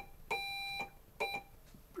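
Steady Morse code tone keyed by hand on a brass straight key: a short beep, a long beep, then a short beep. Dot-dash-dot is the letter R.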